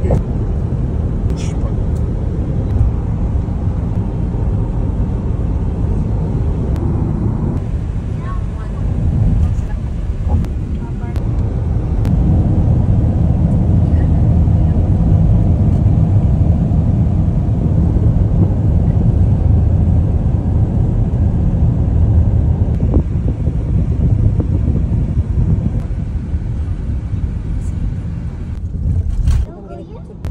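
Road and engine noise inside a moving taxi's cabin: a steady low rumble of tyres and motor at highway speed, growing louder for a long stretch in the middle and dropping off suddenly near the end.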